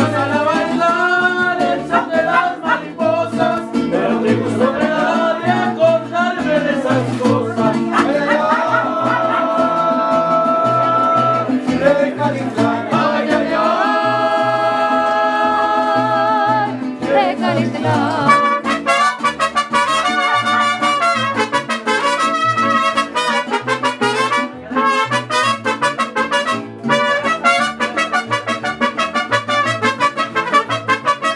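Mariachi band playing, trumpets over strummed guitars keeping a steady rhythm. Twice around the middle, long notes are held before the playing becomes quicker.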